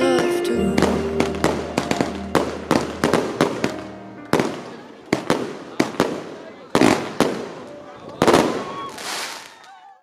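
Fireworks going off: an irregular string of sharp bangs and cracks, close together at first and sparser later, with a longer crackling burst near the end before the sound fades out.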